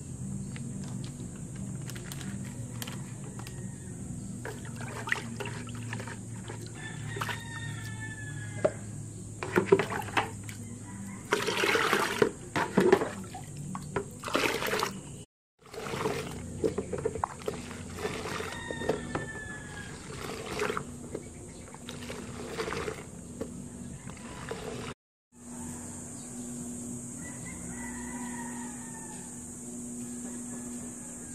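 Water poured from a pail into a plastic bucket of soapy water, splashing and sloshing loudly in bursts. A rooster crows a few times in the background.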